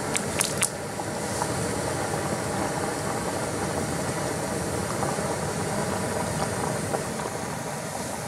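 Jetboil canister stove burner running with a steady hiss, its two cups of water at a full boil. A few sharp clicks sound in the first second.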